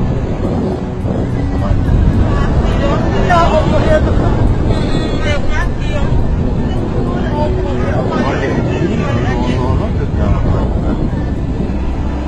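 Indistinct voices of people exclaiming over a loud, steady low rumble.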